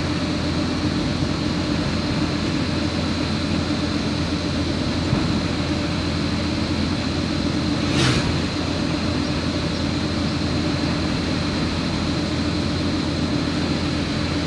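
Steady engine and tyre noise of a vehicle travelling on a smooth asphalt road, with a brief rush of noise about eight seconds in.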